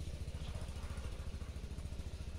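A small engine running steadily: a low rumble with a fast, even pulse.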